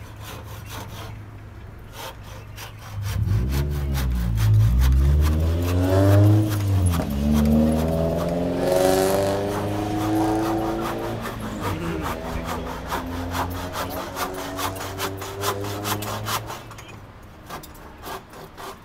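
A motor running over a steady low hum. From about three seconds in its pitch rises for several seconds, then falls away after about eleven seconds. Frequent light clicks run through it.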